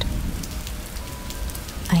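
Steady rain ambience: an even hiss of rain on a surface with scattered drop ticks and a low rumble beneath. A voice starts right at the end.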